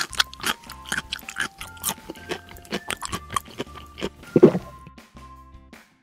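Eating sound effect of crunchy biting and chewing: a quick run of short crunches, then a louder crunch about four and a half seconds in, over light background music.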